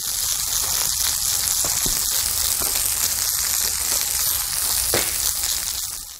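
Push brooms sweeping dry joint sand across concrete pavers: a steady, scratchy hiss.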